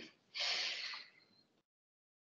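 A brief rustle of paper handouts being handled and passed across a meeting table, one short hissy swish about half a second in.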